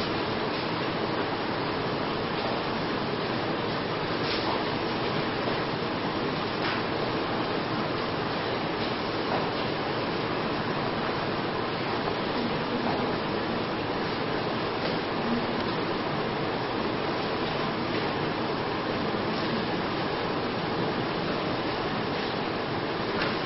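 Steady, even hiss of room noise, with a few faint clicks scattered through it.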